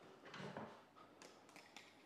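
Near silence, with faint soft rustles and a few small clicks of a plastic container lid and a wire sieve being handled.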